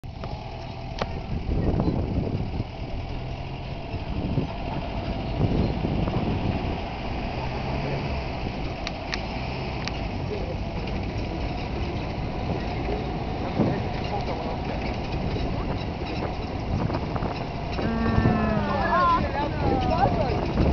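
A truck driving slowly over a rough dirt road: its engine runs with a steady low rumble and the body jolts over bumps. Near the end a short pitched sound rises and falls over it.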